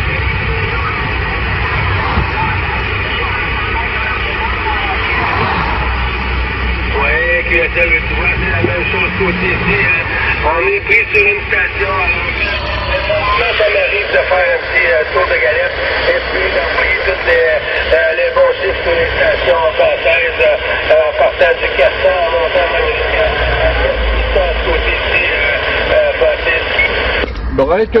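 Garbled voices of distant stations coming through a CB radio receiver on the 27 MHz band, buried in a steady hiss of static and band noise too thick to make out the words. The voices come through more clearly from about halfway through.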